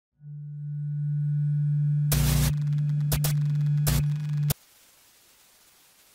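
Glitch-style electronic logo sting: a low steady hum swells in, is broken by two short bursts of static and a few sharp clicks, then cuts off suddenly about four and a half seconds in, leaving only faint hiss.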